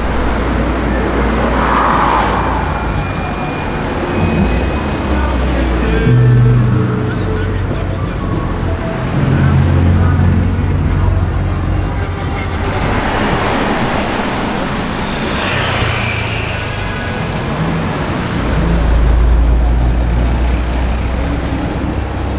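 Cars driving past on a city street, engine rumble and traffic noise rising and falling as each one goes by, loudest in the last few seconds as a car approaches.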